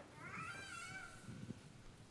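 A faint, high-pitched cry that rises and then holds steady for about a second.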